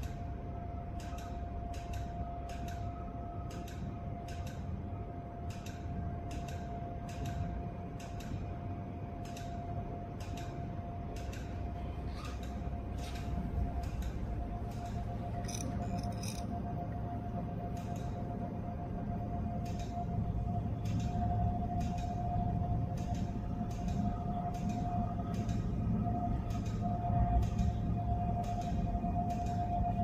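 Laser line-repair machine firing repeated pulses at an iPhone screen's green line, each pulse a short sharp click at an even pace of about two a second. Under the clicks runs a steady thin tone and a low machine hum.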